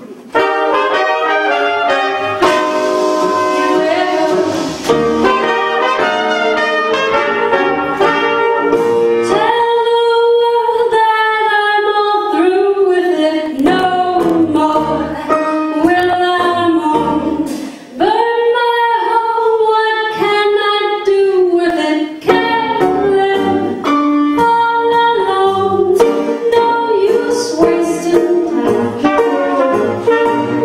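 A small traditional jazz band playing the opening of a tune: tenor saxophone, trombone and a trumpet-family horn together over piano, string bass and drums, the horns sliding between notes in places.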